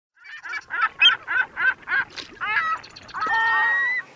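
Goose honking: a quick run of about seven short honks, then a couple of gliding calls and one long held honk at the end.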